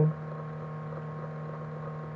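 Steady low electrical hum with fainter higher tones above it, unchanging throughout.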